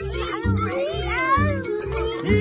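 Background music with a steady low beat, a little over two beats a second, with a cat meowing several times over it.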